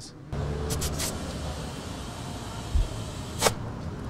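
A car engine running at idle, a steady low rumble, with a few light clicks about a second in and a sharp click near the end.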